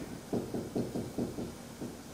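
Marker pen writing on a whiteboard: a quick run of short scratching strokes, about four a second.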